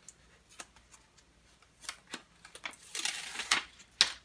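Paper sticker label being handled, with a few light ticks, then a short crackly rustle about three seconds in as its backing sheet is peeled off.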